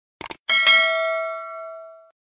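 Subscribe-button animation sound effect: a quick double mouse click, then a bright bell ding, struck twice in quick succession, ringing out and fading over about a second and a half.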